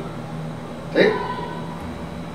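A steady background hum with one short spoken "¿Sí?" about a second in.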